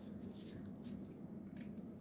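Quiet room tone with a low steady hum and a few faint, light clicks.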